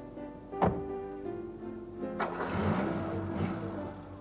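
A car door slams shut about half a second in, the loudest sound, over background music. About two seconds in a second knock is followed by a car engine starting.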